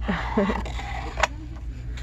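A woman's breathy laugh trailing off, then a single sharp knock about a second in as the wood-framed sign is handled, over a steady low hum.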